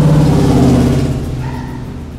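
A motor vehicle engine running loud and steady, then fading away after about a second as it moves off.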